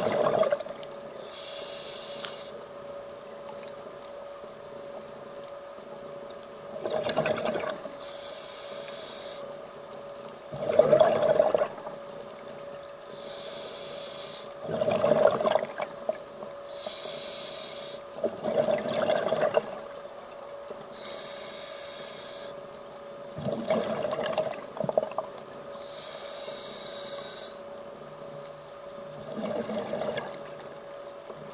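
Scuba diver breathing through a regulator underwater. A short hissing inhale is followed every few seconds by a louder rush of exhaled bubbles, about six breaths in all, over a steady faint hum.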